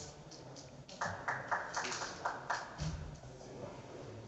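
A short, irregular run of sharp clicks, about four a second, from about one second in to about three seconds in, over a quiet room.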